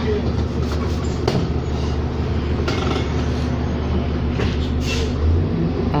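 Inside the cabin of a 2007 New Flyer D40LFR diesel city bus: a steady low drone from the running bus, with a few light knocks and rattles. The low engine note shifts near the end.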